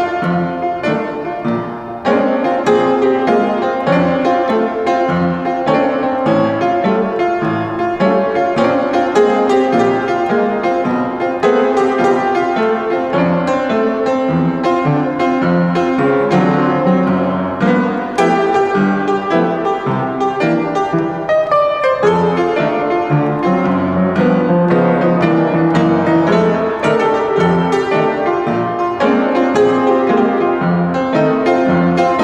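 Solo blues piano on an upright piano, played with both hands: a steady, continuous flow of struck notes and chords.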